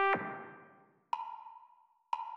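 A trumpet note played back from a score cuts off just after the start and its reverb dies away. About a second in comes a single short woodblock-like metronome click, part of a steady once-a-second beat counting through the rest bar.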